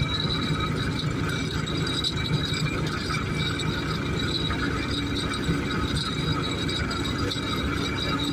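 Tractor-powered groundnut thresher running steadily: the tractor engine and the threshing drum making a continuous mechanical clatter as the plants are fed in.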